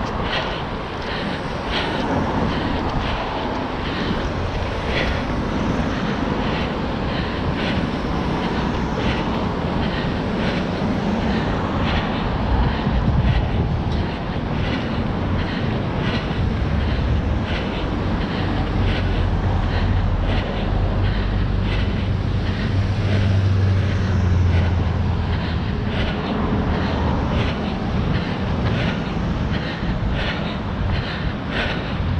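Running footsteps on asphalt, an even beat of about two to three strides a second, over a steady low rumble of wind on the microphone. The rumble swells with a deeper hum in the second half.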